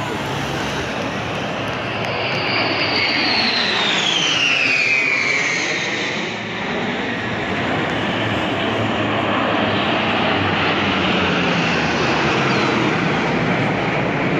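Jet aircraft of a military formation flying low overhead: a steady loud engine roar, with a turbine whine that falls in pitch over a few seconds as a jet passes.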